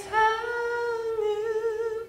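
A man singing unaccompanied, holding one long high note in a soft falsetto with a slight vibrato, sung prettily instead of belted.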